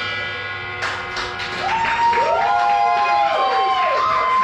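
End of a live metalcore song: the drum kit stops and the last chord and cymbals ring out. From about a second and a half in, sustained pitched tones rise and fall over it, and the crowd starts to cheer.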